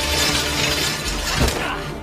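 Action-film sound effects: a loud, continuous breaking, shattering crash with music underneath, and a sharper hit about one and a half seconds in.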